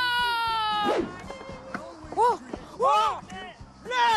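A woman's long, high shout, held for about a second and sliding slightly down in pitch, followed by two short exclamations.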